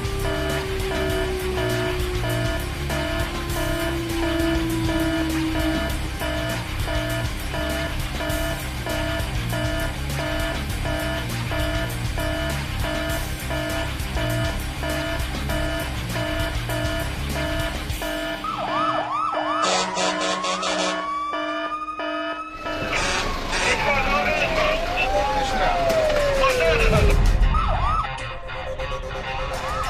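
Background music with a steady beat for about the first eighteen seconds. It stops and a fire engine's siren takes over: a fast warble, then a rising glide, then long rising and falling wails, loudest near the end.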